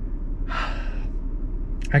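A man's audible breath, lasting about half a second, between phrases of excited talk, over a steady low hum.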